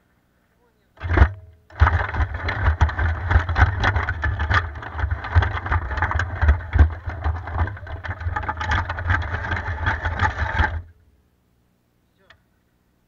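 Homemade tracked robot driving forward on concrete: its electric drive motors and tracks run with a rattling, clattering mechanical noise. A short burst comes about a second in, then the robot runs steadily for about nine seconds before cutting off suddenly.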